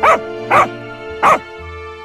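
A dog barking three short times, the third after a slightly longer gap, over background music.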